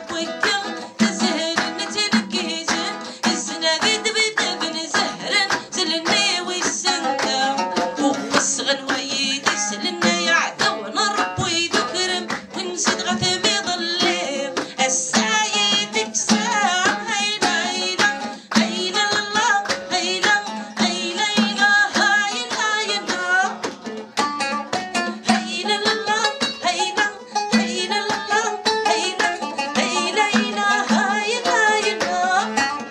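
A woman singing a song while beating a hand drum with her hands, the drum strokes quick and regular under her voice.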